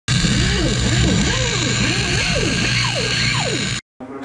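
Loud channel-intro sound bed: a dense wash of noise with overlapping rising-and-falling pitch sweeps over a steady low hum, cutting off abruptly just before the end.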